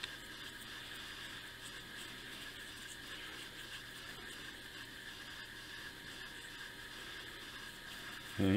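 Faint steady hiss of room tone, with no distinct sounds standing out.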